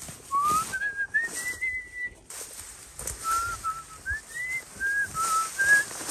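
Clear whistled notes in two phrases. The first climbs step by step over about two seconds to a held high note. The second, starting about three seconds in, moves up and down between a few notes.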